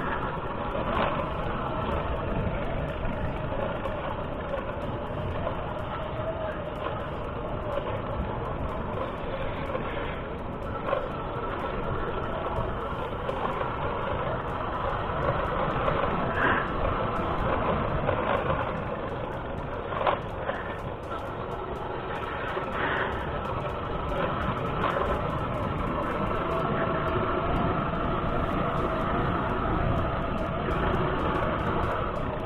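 Motorcycle riding along a paved road, its engine running steadily under road noise, with a few sharp knocks from a rear top box rattling over the bumps.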